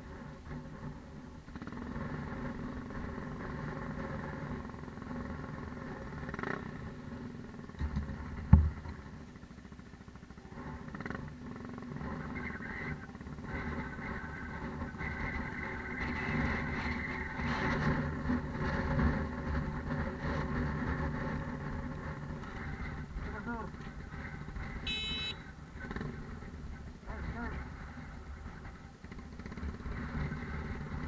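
Motorcycle engine idling steadily, with one sharp knock about eight seconds in.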